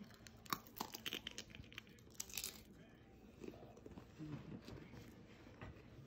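Faint crunching of a potato chip being bitten and chewed along with a marshmallow and trail mix: a quick run of crisp cracks over the first two seconds or so, then quieter chewing.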